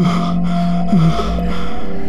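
Tense background music with a steady held drone, over a man's short distressed gasps, each falling in pitch, twice.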